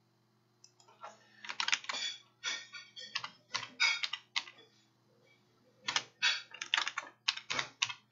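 Typing on a computer keyboard: two quick runs of keystrokes with a short pause between them, as a name is typed into a search.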